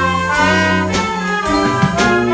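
A live student orchestra of strings, brass and drum kit playing: held chords from the brass and strings that change every half second or so, with a few drum strokes.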